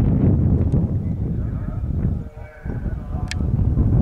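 Horse galloping on turf, heavy hoof thuds mixed with wind buffeting the microphone; the noise dips briefly after two seconds, when a short pitched call is heard, and there is a sharp click just after three seconds.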